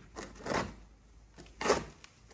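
Cardboard box being handled and cut open with a knife: a few short scrapes and rustles, the loudest shortly before the end.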